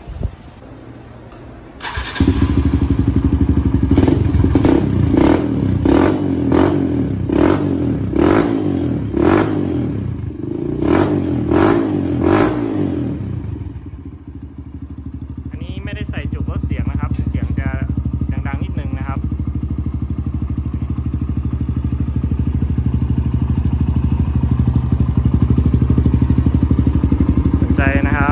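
Kawasaki KLX140RF's single-cylinder four-stroke dirt-bike engine through a titanium exhaust. It starts about two seconds in, is blipped about ten times in quick succession, roughly once a second, and then settles to a steady idle.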